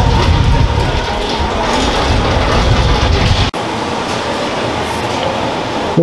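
Outdoor street ambience: a steady wash of noise with a heavy, uneven low rumble. It cuts off suddenly about halfway through, leaving a softer, even hiss.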